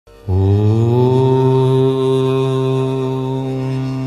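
A deep voice chanting one long held note, a devotional mantra. It starts about a third of a second in, rises a little in pitch, then holds steady on one low pitch.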